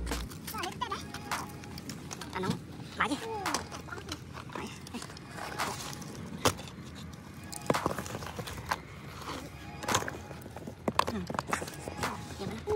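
Phones and cables being handled: scattered clicks and knocks of phone bodies clacking together, with rustling of cords in grass.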